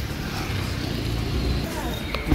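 Steady low rumble of road traffic, with a faint voice beginning near the end.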